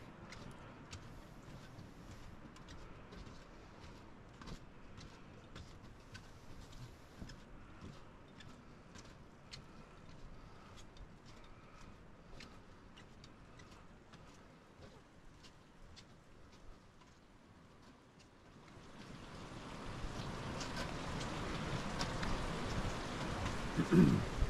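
Faint scattered drips and ticks over quiet background for most of the time. Then, about three quarters of the way in, a steady rush of running water swells up and stays loud.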